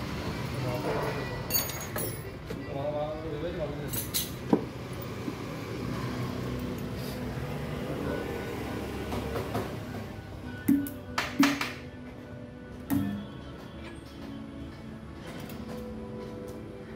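Sharp metallic clinks and knocks from dent-pulling tools on an auto-rickshaw's steel body panel, loudest about four seconds in and again around eleven seconds, over background music and voices.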